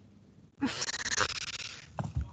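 A breathy exhale into a microphone, a little over a second long, starting about half a second in.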